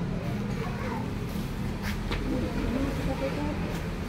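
Indistinct voices of several people talking in the background over a steady low rumble, with a couple of brief rustles about two seconds in.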